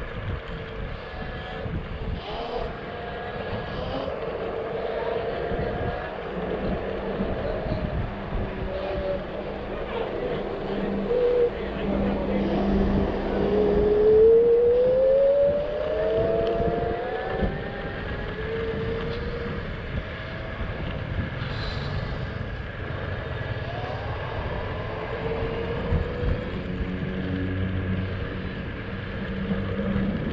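Electric scooter hub motors whining over a steady rumble of tyres and wind while riding. The whine rises in pitch as the scooter speeds up about halfway through, which is also the loudest part.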